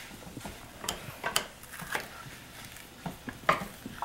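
Kitchen knives slicing bell peppers on plastic cutting boards: irregular sharp taps as the blades strike the boards.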